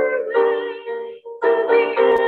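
A hymn sung by a woman's voice with instrumental accompaniment, phrase by phrase, with a short dip between phrases about a second in.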